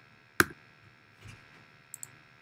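Clicks from operating a computer while a screen recording is stopped and closed: one sharp click about half a second in, a faint soft knock later, and two small quick clicks at the very end.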